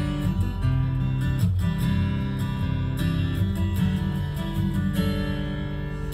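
Music: strummed acoustic guitar playing chords with strong bass notes, the chords changing every second or so, with no singing.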